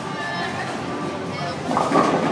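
Bowling-alley din of chatter and faint background music while a bowling ball rolls down the lane. About 1.7 s in, a louder crash swells up as the ball reaches the pins.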